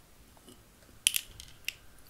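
A handful of sharp metal clicks and light scrapes, starting about a second in, as a vape tank is picked up and screwed onto the threaded 510 connector of a Lost Vape Ursa Quest box mod.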